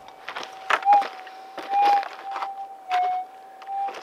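Gold prospecting metal detector's steady threshold hum, swelling briefly in pitch and level about three times as the target is brought up in the dug soil. Sharp clicks and scrapes of a small pick in stony dirt sound over it.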